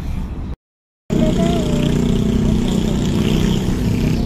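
Steady engine and road hum inside a car on the road. It cuts out for about half a second just after the start, then comes back louder.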